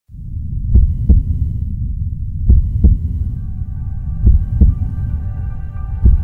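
Soundtrack heartbeat effect: three slow double thumps over a low rumble, one pair about every second and three-quarters. A sustained synth chord swells in from about halfway.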